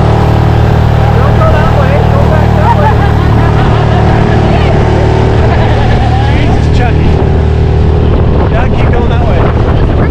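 Small outboard motor on an inflatable dinghy running steadily at speed, a constant low engine drone with no change in pitch.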